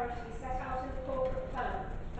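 Only speech: a person speaking continuously, with no other sound standing out.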